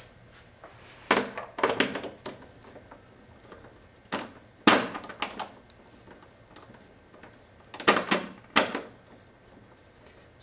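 A quarter-inch nut driver unscrewing the nuts that hold a synthesizer's potentiometer circuit board to its metal front panel: short, sharp clicks and knocks of metal on metal in small clusters, the loudest just under five seconds in.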